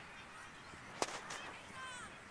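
A sharp crack about halfway through, with a weaker second one just after, over faint high-pitched calls and shouts in the background.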